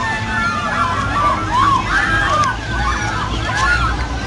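Many birds calling in short, arching chirps over a steady low rumble of outdoor background noise.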